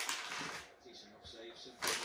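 Crinkly plastic dog-treat packet being rustled as a treat is taken out, with a sharp crackle near the end.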